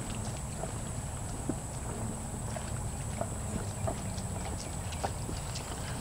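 Faint, irregular clopping of donkey and hinny hooves on a concrete slab, over a steady low rumble.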